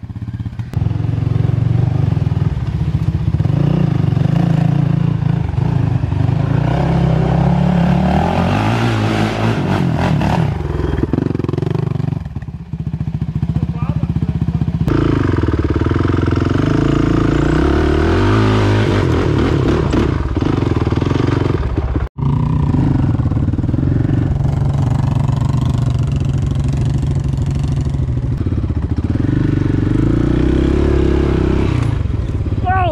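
ATV engine running under load up a hill, the revs rising and falling as the throttle changes. There is a brief break in the sound about two-thirds of the way through.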